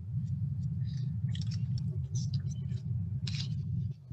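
A steady low rumble, with faint scattered clicks and rustles over it.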